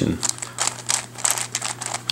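Layers of a 3x3 Mixup Plus twisty puzzle cube being turned by hand: a quick, irregular run of plastic clicks and clacks as the pieces slide and snap into place.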